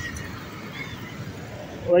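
Street traffic noise: a steady hiss of passing cars and motorbikes, with a faint brief high tone about a second in.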